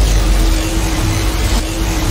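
Loud cinematic sound effect from a subscribe outro animation: a dense, deep rumble with a steady hum held over it from shortly after the start.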